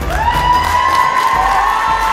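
Crowd cheering over the last bars of music, with one shrill whoop that rises just after the start and is held.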